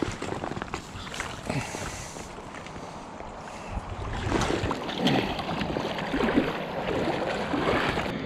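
River water splashing and sloshing as a hooked trout is fought close in and scooped into a landing net, growing louder about halfway through.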